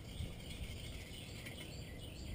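Quiet outdoor background noise with faint, scattered high chirps.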